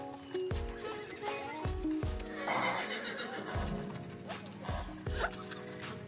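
A horse whinnies over background music with a steady beat.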